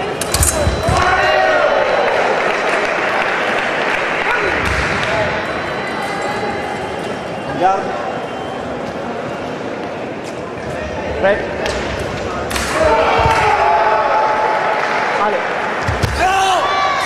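Voices shouting and calling in a large echoing hall during a sabre fencing bout, with two sharp knocks in the middle stretch.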